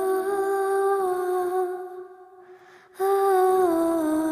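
A single voice humming a slow, gentle melody in long held notes. It fades out about two seconds in and picks up again at about three seconds.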